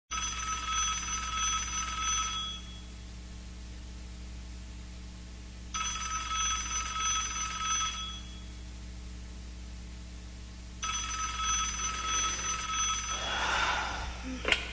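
A telephone ringing three times, each ring about two and a half seconds long with about three seconds between. The third ring breaks off with a rustle as the handset is picked up.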